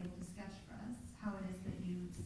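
Only speech: a woman speaking.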